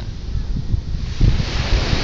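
Wind buffeting the microphone in low, gusty rumbles, with a rushing hiss that swells up about a second in.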